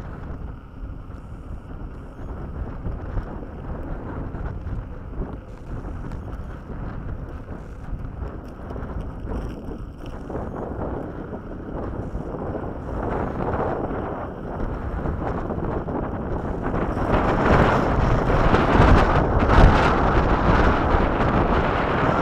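Wind buffeting the microphone of a camera riding along on an electric unicycle, a steady low rumble that grows louder in the last few seconds.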